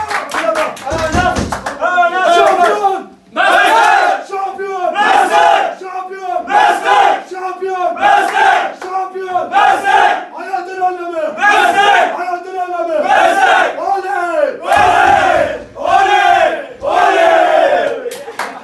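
A group of men chanting and shouting in unison, a loud, rhythmic shout roughly every three-quarters of a second, with hand clapping in the first two seconds.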